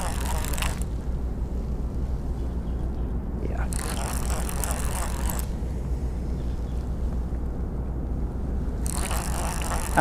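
Round baitcasting reel being cranked to wind in line on a hooked fish, its gears whirring and clicking in three spells: at the start, about four seconds in, and near the end. A steady low rumble runs underneath.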